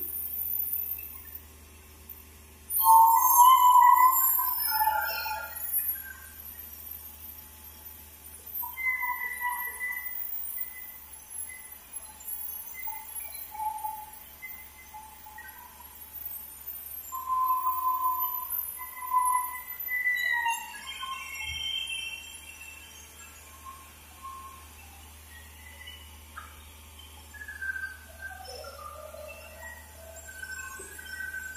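Band sawmill cutting a log lengthwise: a steady low machine hum with short, ringing, whine-like tones from the blade coming and going, loudest about three to six seconds in.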